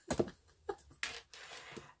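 A short laugh trailing off, then a small click and soft rustling as a yarn-and-bead tassel is handled.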